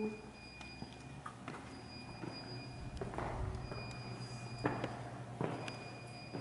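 Footsteps climbing concrete steps and crossing a porch: a handful of irregular knocks and scuffs.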